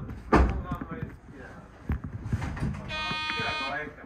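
A loud clunk just after the start, then the cab buzzer of an Odakyu 1000-series train sounds one steady tone for about a second near the end: the signal for the driver to depart.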